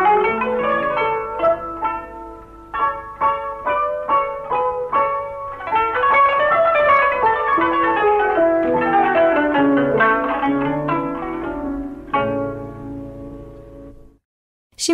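Kanun, the Turkish plucked zither, playing quick runs of plucked notes, ending on a final struck chord about twelve seconds in that rings and fades away.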